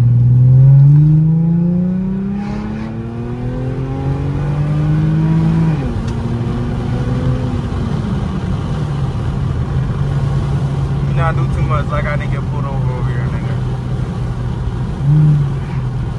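Infiniti G35x's 3.5-litre V6 accelerating: its note climbs steadily for about six seconds, drops back, then holds steady while cruising, with a brief rev blip near the end.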